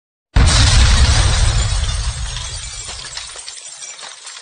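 Glass-shattering sound effect for an intro: a sudden loud crash with a deep boom, its tinkling fragments fading away over about three seconds.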